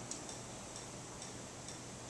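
Quiet room tone in a pause between words, with a few faint, light ticks over a low steady hiss.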